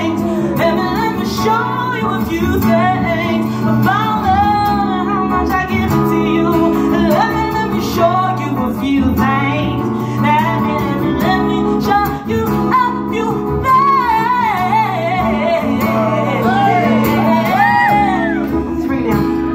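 Female vocalist singing live, with wavering, curving vocal runs over sustained chords from acoustic guitar and keyboard.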